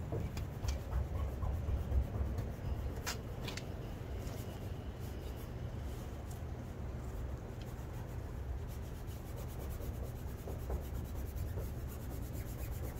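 Fingers and palms rubbing and pressing over a vinyl decal on a van's side panel, scuffing across the film to squeeze out trapped air bubbles. A few sharp clicks come about three seconds in, over a steady low rumble.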